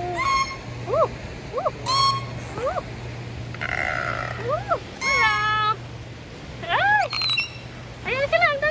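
A gull calling: a string of short rising-and-falling cries, roughly one a second, with a quicker run of notes near the end. A low steady hum runs underneath.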